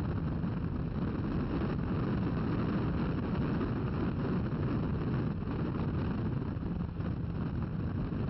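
Toyota MR2 Spyder's mid-mounted 1.8-litre four-cylinder engine running at speed on track, heard from the open cockpit with steady wind rush over the top.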